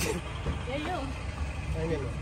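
Pickup truck driving, its engine and road noise a steady low rumble heard from the open cargo bed, with faint voices over it.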